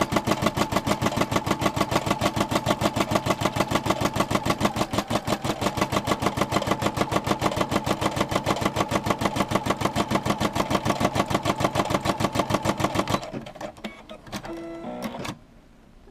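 Brother SE425 embroidery machine stitching out a design, the needle running at a rapid, even rhythm over a steady motor hum. It stops about 13 seconds in, followed by a few faint clicks.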